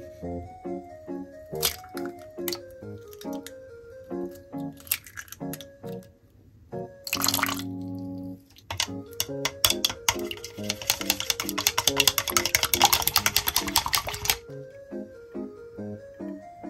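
Eggs being beaten in a plastic measuring cup: a rapid, dense clicking for about four seconds in the second half, the loudest sound, over light background music. A short rushing liquid sound comes just before, about halfway in.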